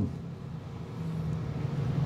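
A low, steady background hum in a pause between speech, with a faint steady tone coming in about halfway through and the level creeping up slightly.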